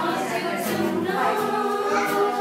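A group of voices, children among them, singing a song together in unison, accompanied by an acoustic guitar.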